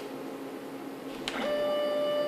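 3040T CNC router: a steady low machine hum, then a click about a second and a half in and a louder, steady pitched whine as the stepper motors drive a rapid move lifting the spindle away from the engraved aluminium.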